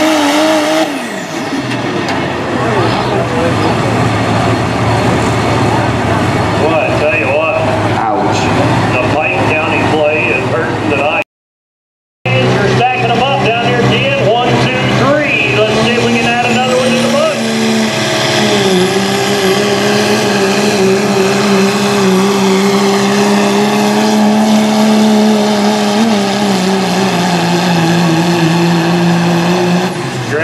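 Second-generation Dodge Ram diesel pickups (Cummins-powered) running at full throttle in a truck pull, with a high turbo whistle. One truck's run cuts off suddenly about a third of the way in. After a moment another truck's engine is heard, held at high, steady revs while it pulls the sled.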